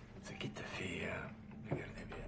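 A man speaking quietly in Russian, a short question, with a brief knock near the end.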